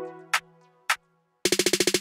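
Programmed electronic drum beat in a break: the full groove drops out, leaving a low bass note fading away and two lone percussion hits. Then a fast snare roll of about twenty hits a second builds up near the end.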